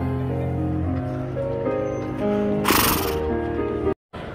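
Yamaha electronic keyboard playing sustained chords, the notes changing every second or so. A brief hissing rush cuts across the music about three seconds in.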